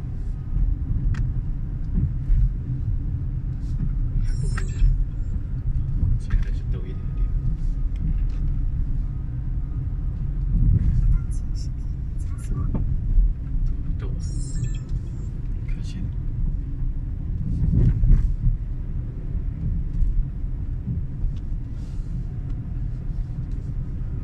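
Steady low road and engine rumble heard inside the cabin of a moving car, with a few brief high-pitched squeaks or clicks along the way.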